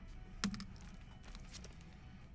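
A sharp plastic click about half a second in, then lighter clicks and taps as trading cards in plastic sleeves and holders are handled on a table.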